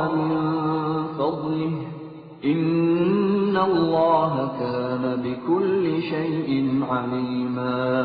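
A solo male voice chants Qur'an recitation in Arabic, in a melodic style with long drawn-out notes and slow melodic turns. There is a short breath break a little over two seconds in.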